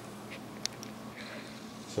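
Faint steady hum of a newly built desktop PC's cooling fans running as it powers back up, with one small click about two-thirds of a second in.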